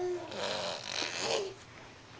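A baby's voice: a short pitched note, then about a second of breathy, raspy vocalizing that dies away after about a second and a half.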